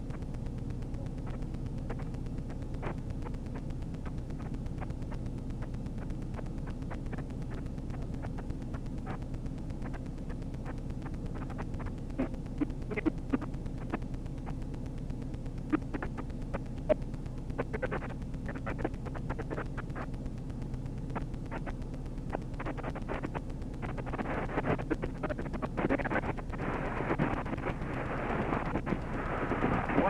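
A steady low hum with scattered faint clicks and crackles. About 24 seconds in, a louder rustling hiss sets in and grows toward the end.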